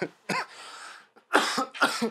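A man coughs twice, close to the microphone, after a short breathy intake: a smoker coughing on a draw of smoke.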